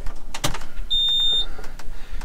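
A click, then a single electronic beep about half a second long, from the cab of a John Deere 7230 tractor as the key is switched on before the engine is started.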